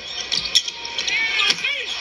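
Televised basketball game sound: arena crowd noise with several sharp knocks and short high squeaks from the court, and a commentator's voice briefly near the end.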